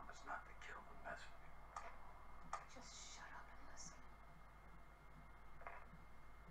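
Faint, hushed dialogue from a TV episode playing in the room.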